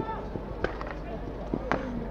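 Sharp cracks of field hockey sticks striking the ball out on the pitch: a few light clacks and two sharper ones, about half a second in and near the end, over faint distant voices.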